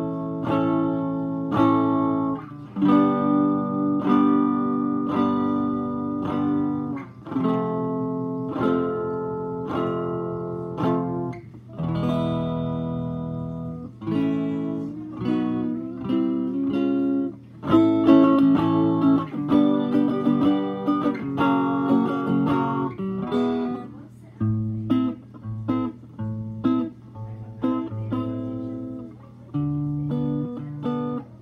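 Electric guitar strummed in chords through a hand-wired Fender Champ 5F1-style single-ended 6V6 tube amp built into an antique Stromberg Carlson radio, heard through the radio's 5.5-inch Alnico speaker. Held, ringing chords give way to shorter, choppy strums about two-thirds of the way through.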